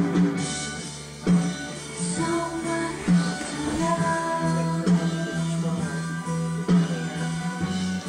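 Music: guitar with drums keeping a steady beat of about one hit a second, and sustained melody notes.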